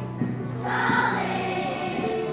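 Elementary-school children's choir singing a Christmas song, the voices swelling louder about two-thirds of a second in over sustained low accompaniment notes.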